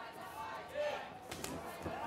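Faint arena background of crowd and voices, with a few sharp impacts about one and a half seconds in: a kickboxer's low kick landing on the opponent's leg.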